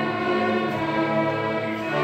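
A fifth-grade school string orchestra of violins and cellos playing slow, sustained notes.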